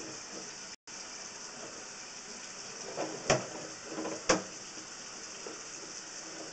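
Sewer inspection camera's push cable being pulled back out of the line: a steady hiss with two sharp clicks about a second apart, each with a fainter one just before it.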